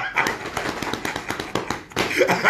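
A man laughing heartily in loud, breathy bursts that repeat quickly.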